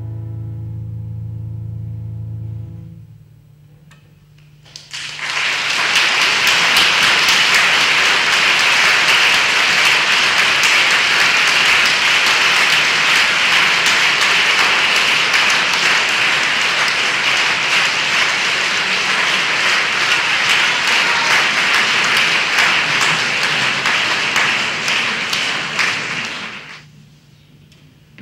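Pipe organ and cello holding a final chord that stops about three seconds in; after a short pause, audience applause for about twenty seconds, stopping shortly before the end.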